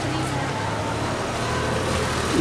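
A motor vehicle engine idling close by: a steady low hum over street noise.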